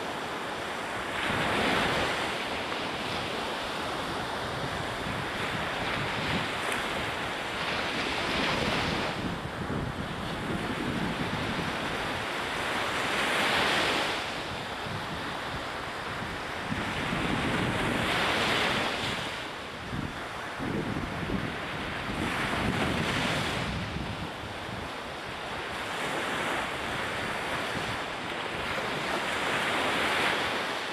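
Small ocean waves breaking and washing up a sandy beach, surging louder every four or five seconds as each wave breaks, with wind buffeting the microphone.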